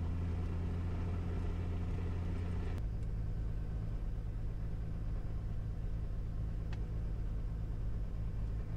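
Beechcraft A36 Bonanza's six-cylinder piston engine running steadily during a pre-takeoff run-up, with mixture and propeller full forward. Its note drops a little and changes about three seconds in.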